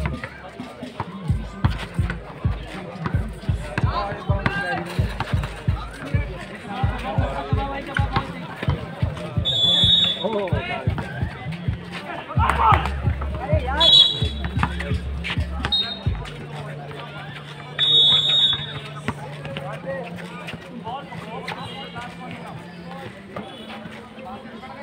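Basketball bouncing on an outdoor concrete court, over music from courtside loudspeakers and people talking. A few short, high whistle blasts sound about ten, fourteen and eighteen seconds in.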